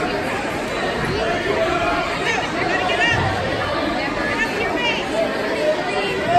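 Crowd chatter: a steady babble of many voices talking over one another at once.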